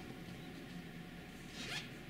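Quiet room tone in a pause between spoken phrases, with one brief, faint rising swish about three-quarters of the way through.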